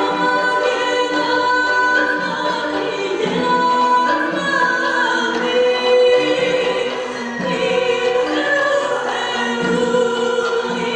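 A woman singing an Armenian gusan folk song with long held notes, backed by a folk instrument ensemble.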